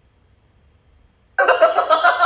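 Near silence for about a second and a half, then loud laughter from a man and a woman starts suddenly.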